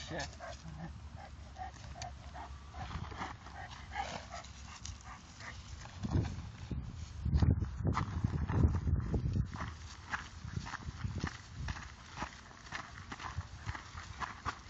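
A dog panting close to the microphone, quick even breaths, while it and the walker move through long grass with rustling and steps. About six seconds in, a few seconds of loud low rumble take over.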